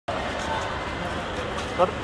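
Steady background hubbub from a group of people walking together, with faint indistinct voices; one voice speaks a short word near the end.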